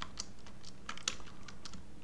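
Computer keyboard being typed on: a run of irregularly spaced key clicks.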